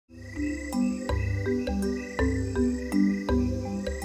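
Electronic intro music: a rapidly pulsing low bass under shifting sustained chords, with sharp percussive hits about every half second.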